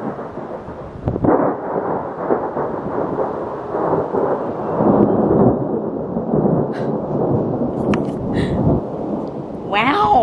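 A long roll of thunder, rumbling from about a second in, swelling in the middle and easing off near the end.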